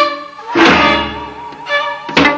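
Korean traditional sinawi music accompanying dosalpuri dance: a sustained melody with a wavering vibrato, struck through by a loud drum stroke about half a second in.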